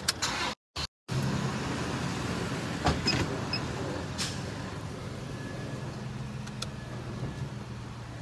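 A vehicle idling, heard from inside the cab as a steady low hum. A few clicks and knocks come near the start and again about three and four seconds in, and the sound cuts out completely twice about half a second in.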